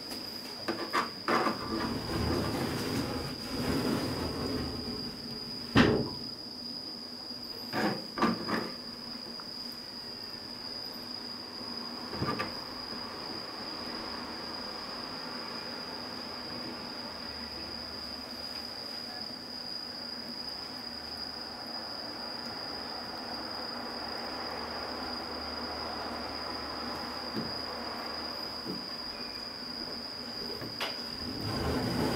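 Short knocks and rustles of food and utensils being handled over a frying pan as pizza toppings are laid on, loudest about six and eight seconds in and stopping after about twelve seconds. A steady high-pitched whine runs underneath throughout.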